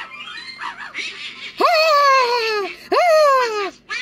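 A cartoon character's voice giving two long, high-pitched cries that fall in pitch, one after the other, over soft background music.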